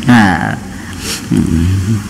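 A man preaching into a handheld microphone, in two short spoken phrases with a pause between.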